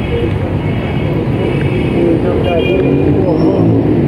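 Street noise: a motor vehicle running close by with a steady low rumble, and voices in the background.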